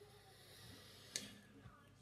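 Near silence: faint room tone, with one short click about halfway through.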